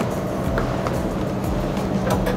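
Steady low mechanical hum and din of baggage conveyor machinery, with a couple of light knocks about half a second to a second in.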